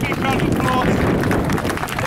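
Indistinct voices of people nearby, with wind buffeting the microphone.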